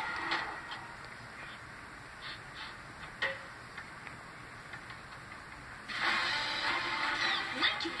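Cartoon soundtrack heard from a television speaker: mostly quiet with a few soft knocks, one of them a head-bonk sound effect about three seconds in. About six seconds in, a louder, busier soundtrack of music and effects comes in suddenly.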